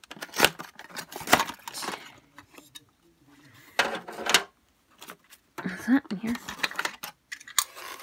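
Small plastic dollhouse furniture pieces being handled and set down on a plastic dollhouse floor: a few sharp plastic clacks and taps, with a longer cluster of clicks about four seconds in.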